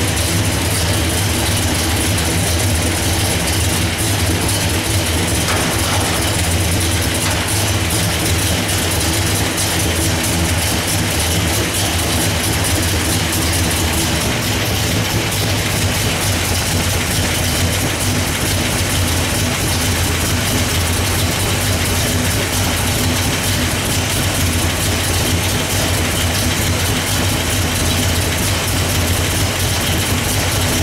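Pontiac 428 V8, bored .030 over, idling steadily. About halfway through, the low, even drone weakens and a noisier mechanical sound from the opened engine bay takes over.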